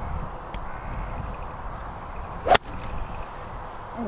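A golf club swinging through the grass and striking the ball from a poor lie in the rough: a short swish, then one sharp crack about two and a half seconds in, the loudest sound.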